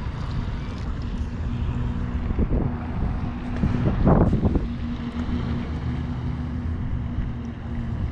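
Wind rumbling on the microphone, with a steady low hum underneath and a brief louder sound about four seconds in.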